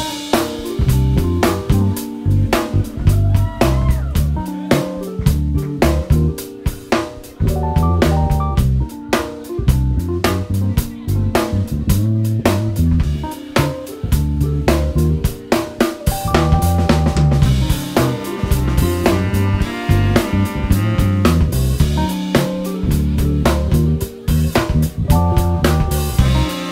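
Jazz band playing live: a busy drum kit groove with snare, rimshots and bass drum under an electric bass line and keyboard.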